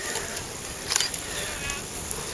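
Cyclo-cross bikes going past with a buzzing of freewheel hubs as riders coast, a short clatter about a second in, and a low wind rumble on the microphone.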